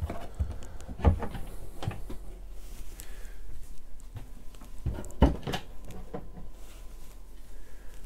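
Overhead wall cabinet doors in a camper van being pressed and lifted open one after another, the catches clicking and the doors knocking, with the loudest knocks about a second in and about five seconds in.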